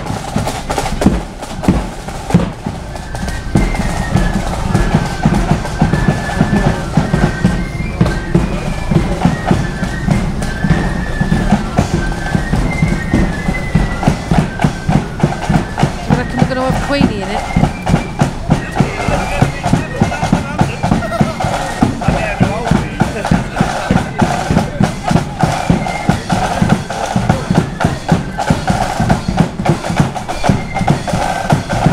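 Marching band playing as it marches: bass drum and snare drums beat a steady march, about two beats a second, under a high melody line. The music is heard throughout and grows stronger in the second half.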